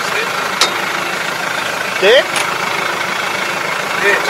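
Tractor engine idling steadily, with one sharp click about half a second in.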